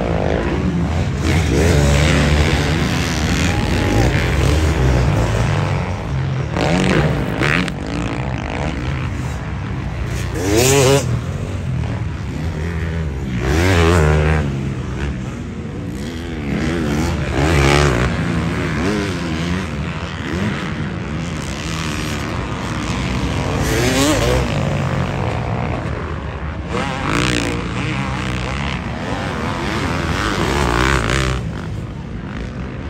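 Motocross bike engines revving hard and easing off as the riders work the throttle around the track, the pitch climbing and dropping again every few seconds.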